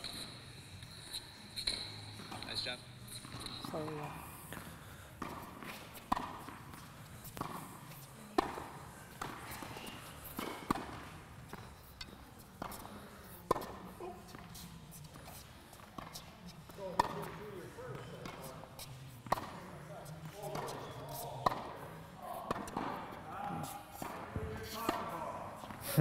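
Tennis balls struck by racquets in a volley drill on an indoor court: sharp pops about once a second, echoing in the hall.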